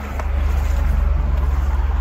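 A steady low rumble with little above it, growing slightly louder about half a second in.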